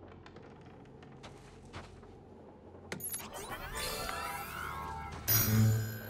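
Sci-fi electronic power-up effect as a virtual reality helmet and bodysuit switch on. A few faint ticks come first, then from about halfway gliding electronic sweeps and layered tones build up to a loud, deep surge near the end.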